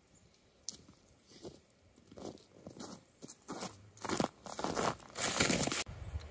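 Footsteps crunching through crusty snow and dry brush, one step about every half second, getting louder as they come closer. A louder, longer crunching rustle comes near the end and cuts off abruptly.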